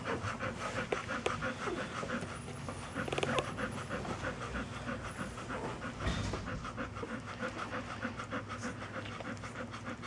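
Nursing mother dog panting in a rapid, even rhythm while her newborn puppies suckle, with a brief squeak about three seconds in.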